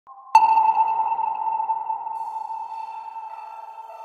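A single ringing, bell-like soundtrack tone, struck sharply about a third of a second in and slowly fading over the next few seconds, like a sonar ping.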